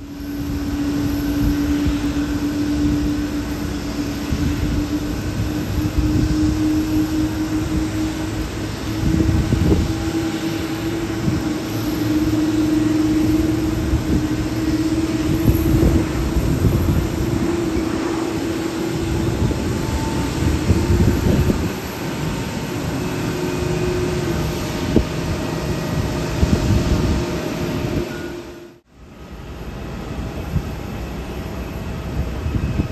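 Jet engines of a Japan Airlines Boeing 737 on landing: a steady rumble with a whining tone that slowly rises in pitch, and swells of noise that come and go. The sound drops out sharply about a second before the end.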